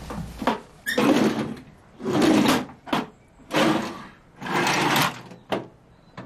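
Drawers of a metal-framed cabinet being pulled open and pushed shut one after another. There are about four sliding scrapes of half a second each, with short sharp knocks between them, during a hurried search.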